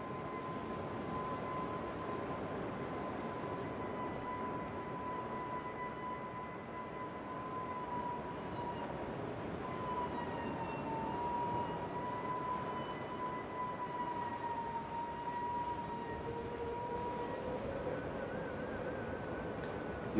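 Soft ambient meditation music: one long, high sustained tone that wavers slightly in pitch over a faint hiss. A lower held tone joins near the end.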